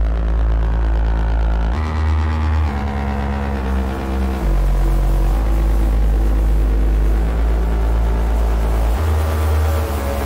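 Electronic synthesizer music: sustained synth chords over a deep, heavy bass, with the bass and chords moving to new notes every few seconds.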